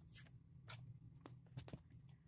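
Near silence with a few faint, scattered clicks and rustles of handling as a trading card in a plastic sleeve is put back in place, over a faint steady low hum.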